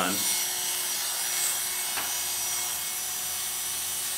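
Oster Classic 76 hair clipper with a number one blade running steadily as it tapers short hair around the ear. There is a single light click about halfway through.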